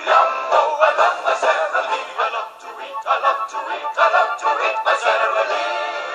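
Sung TV-commercial jingle: voices singing a melody over backing music, with a thin sound lacking any bass.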